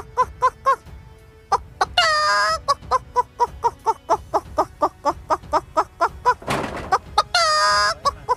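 A woman imitating a chicken with her voice: quick, evenly repeated clucks, about four a second, broken twice by a longer drawn-out squawk, about two seconds in and near the end, with a short hoarse rasp just before the second squawk.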